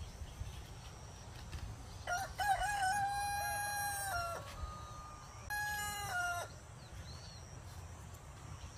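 A rooster crowing twice: a long crow starting about two seconds in, then a shorter crow about five and a half seconds in.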